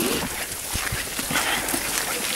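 Footsteps walking on a wet, slushy snow-covered road: irregular steps over a steady noisy hiss.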